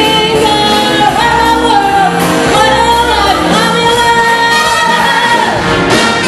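Swing big band playing behind a female singer, with several long held notes.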